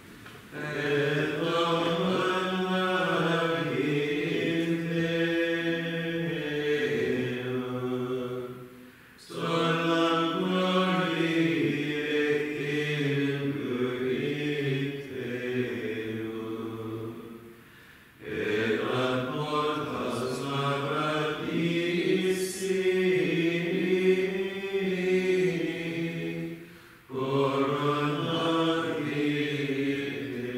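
A small choir of men chanting Vespers psalmody in unison plainchant. It comes in four long phrases of about eight or nine seconds each, with short breaks for breath between them.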